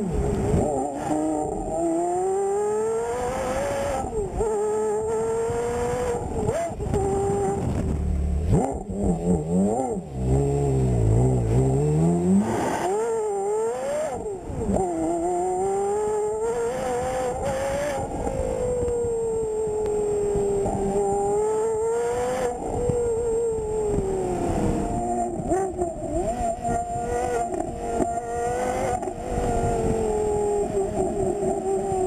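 Porsche Carrera GT's V10 engine revving hard under acceleration. Its pitch climbs and then drops sharply several times, as at gear changes. Near the middle there is a lower, deeper stretch before it climbs again.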